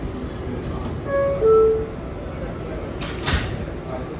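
R188 subway car door-closing chime: two descending tones, the second lower and louder. Near the end the doors slide shut with a short clattering thud, over the steady hum of the stopped train.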